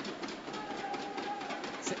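Ice hockey rink ambience during live play: a steady background of the arena with scattered faint clicks and a faint held tone through the middle.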